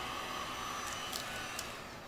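Electric heat gun blowing with a steady hiss, switched off near the end, as used to push epoxy resin into lacing cells.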